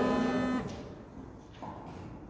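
A singing voice holding the last note of a phrase of a sung psalm response, which stops about half a second in; then a quiet pause with a faint brief tone near the end.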